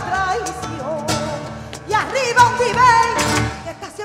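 Live flamenco bulerías: a woman singing in long, wavering, ornamented lines over flamenco guitar, with sharp rhythmic hand claps (palmas). The music dips briefly near the end.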